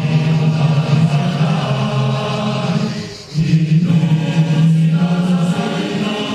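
A group of voices singing together in long held notes, with a brief breath-pause about three seconds in.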